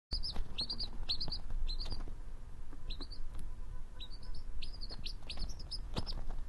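Quail chick peeping: a run of short, high cheeps, several a second, with a brief pause partway through.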